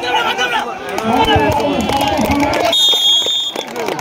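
Many voices shouting during a kabaddi tackle, then a single steady, high referee's whistle blast a little under a second long, about three seconds in, marking the end of the raid.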